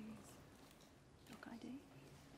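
Near silence: room tone, with a brief faint murmured voice about one and a half seconds in.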